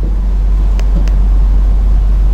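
A loud, deep, steady hum that slowly grows louder, with two faint clicks about a second in.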